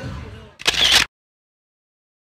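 A camera shutter click sound, a short loud snap about half a second in that cuts off sharply, over fading background chatter.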